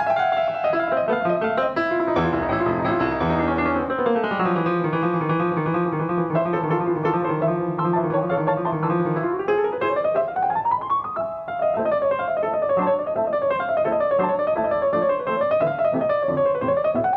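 Steinway grand piano played solo. A falling run about two seconds in settles into a held low chord, then a rising run near the middle leads into a rippling figure that rocks up and down.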